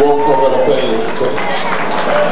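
A performer's voice on stage, drawing out long held notes that glide in pitch, with little instrument sound beneath it.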